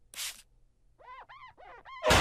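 A cartoon spray bottle of cleaner gives one quick spritz. About a second later comes a quiet run of about five short squeaks, each rising and falling in pitch.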